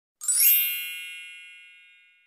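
A bright, bell-like chime sound effect struck once about a quarter second in, ringing with many high tones and fading away over about two seconds.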